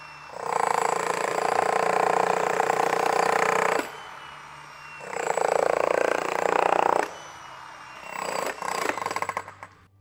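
Hilti heavy demolition breaker hammering its chisel into a concrete slab, in two runs of about three and two seconds with a pause between, then a shorter, quieter burst near the end.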